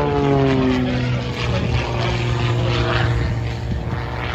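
Propeller-driven aerobatic plane's engine passing overhead, its pitch falling over the first second as it goes by, then holding a steady drone.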